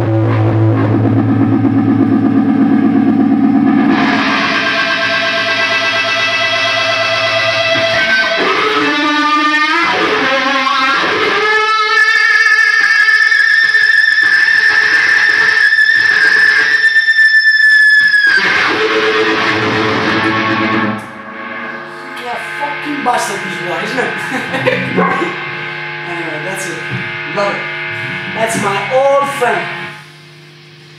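Fender Stratocaster played through a fuzz pedal and a Uni-Vibe-style Gypsy-Vibe into a Marshall amp: loud held, fuzz-driven notes with wavering overtones, then a long held high note in the middle that bends down as it ends. Softer picked notes follow in the last third.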